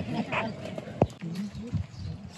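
People talking quietly, with a single sharp click about halfway through.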